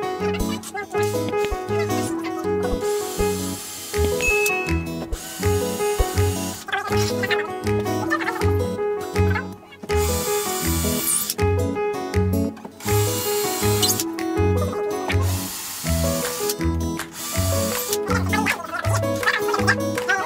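Background music with a steady, even bass beat and repeating melodic notes.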